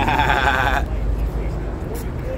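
A man's high, warbling burst of laughter, lasting under a second at the start, over steady low outdoor rumble.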